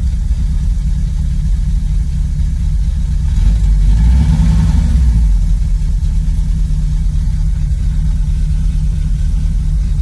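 Volkswagen Syncro van engine idling steadily shortly after a cold start. It swells slightly for a couple of seconds in the middle, then settles back.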